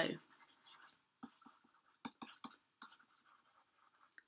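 Faint taps and light scratching of a stylus writing by hand on a tablet screen, a few soft ticks spread over a couple of seconds.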